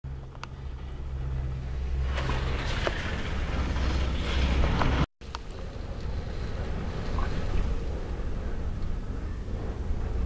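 Strong wind of about 30 knots buffeting a travel trailer, heard from inside as a low rumble under a steady hiss, with a few faint ticks. The sound drops out for an instant about halfway through.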